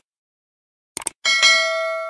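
Subscribe-button animation sound effects: a quick mouse click about a second in, then a bright bell ding that rings on and slowly fades.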